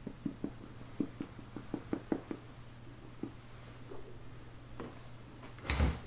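Soft, irregular tapping of a small hand-held mesh sieve as confectioner's sugar is shaken through it onto a cake, about a dozen light taps over the first three seconds or so. A low thump just before the end.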